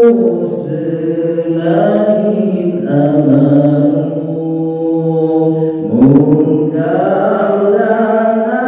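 A man singing a slow Islamic sholawat chant into a microphone, holding long notes that step and slide between pitches, with a short break for breath about six seconds in.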